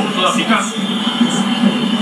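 Spanish football commentary of a TV broadcast, played through a television speaker, with a steady low background din under the voice.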